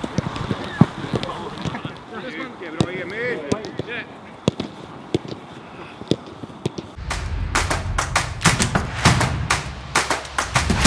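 Footballs being kicked on an artificial pitch: scattered sharp thuds among voices and chatter. About seven seconds in, music with a strong low beat starts and takes over.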